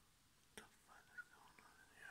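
A person whispering faintly, from about a second in, with a single sharp click about half a second in.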